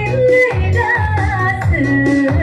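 A woman singing a rijoq song, amplified through a microphone, over electronic keyboard backing with a steady beat. Her melody bends and turns in ornamented glides.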